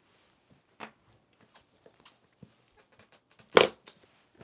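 Metal latches on a hard black leather briefcase being worked open: small clicks and handling taps, then one loud sharp snap about three and a half seconds in as a latch springs open.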